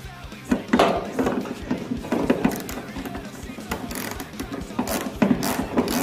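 Socket ratchet clicking in short quick runs as a bolt is worked loose, over background rock music.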